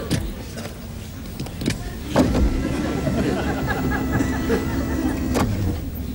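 Photo booth's print-processing machinery whirring steadily for about three seconds, starting with a knock and cutting off with a click; a few knocks come before it.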